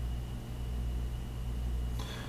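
Steady low hum with faint hiss: room tone, with no distinct event.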